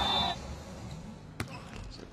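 A single sharp impact of a volleyball about one and a half seconds in, over low arena noise.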